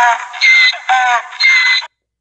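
FishDonkey app's notification sound on the phone, signalling a new leader on the tournament leaderboard: a loud synthetic musical jingle, two short falling phrases alternating with two brief high steady tones, that cuts off suddenly near the end.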